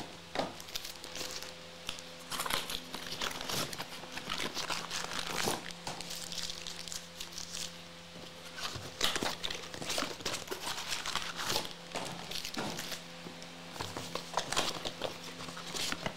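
Foil trading-card packs crinkling and rustling as they are handled and shuffled on a stack, with irregular sharp crackles and taps. A faint steady hum runs underneath.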